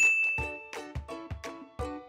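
A bright electronic chime dings once, right at the start, and rings for under a second as the quiz countdown ends and the answer is revealed. Light background music with plucked notes carries on under and after it.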